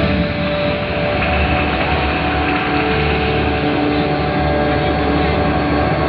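Ambient soundtrack played loud through speakers: a steady low rumble with long held tones over it.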